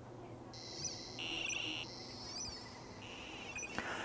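QRPme Pocket Pal II hamfest tester running its speaker test: a faint, high-pitched electronic warbling tone that alternates between the board's piezo speaker and a small external speaker on the test leads. It starts about half a second in and comes in short stretches, with a stronger, lower tone twice.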